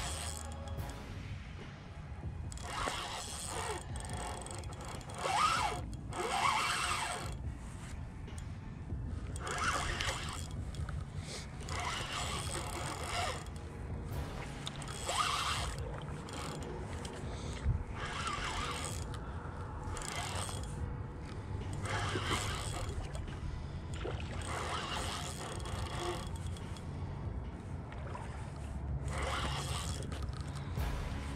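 Spinning reel being cranked to retrieve a lure, in short bursts a second or two long, over a low steady rumble.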